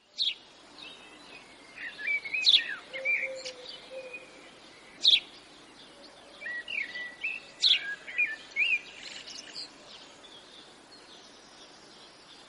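Songbirds chirping and singing in short warbling phrases over a faint steady outdoor hiss, the calls thinning out after about nine seconds.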